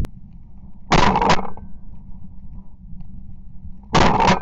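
Shotgun shots: two loud reports in quick succession about a second in, and another shot beginning at the very end.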